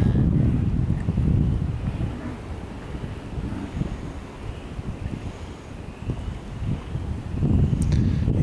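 Wind buffeting the microphone outdoors, a low rumble that is stronger at the start and near the end and eases through the middle.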